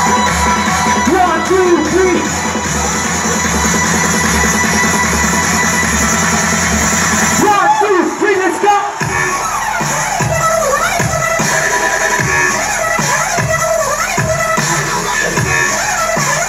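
Loud electronic dance music played through a large outdoor DJ sound system, with a steady kick-drum beat. About halfway the bass drops out briefly under a sung or sampled vocal, then the beat comes back in.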